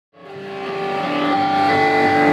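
Live band playing sustained, ringing electric guitar and keyboard notes that fade in from silence and swell louder.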